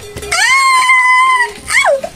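A long, high-pitched cry held at one pitch for about a second, followed near the end by a short cry that falls quickly in pitch.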